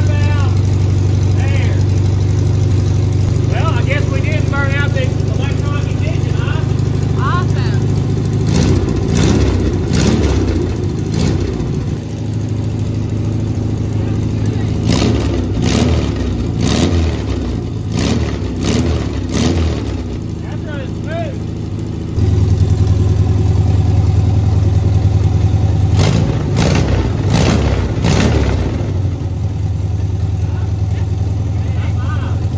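1971 VW Beetle's air-cooled flat-four engine running on a new carburetor and electronic ignition with the correct coil, freshly started after 23 years parked. It idles steadily while the throttle is opened several times, the revs rising and falling, and the idle steps up about two-thirds of the way through. It is running clean.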